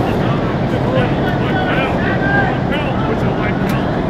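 Several people talking in the background over a loud, steady low rumble of outdoor noise.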